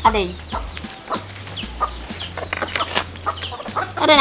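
Chickens clucking: short, falling calls scattered through, some close together.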